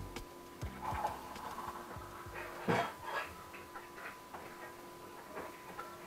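Metal spoon scraping and knocking against a steel cooking pot as food is stirred, a few scattered knocks with the strongest near the middle, over a faint steady whine.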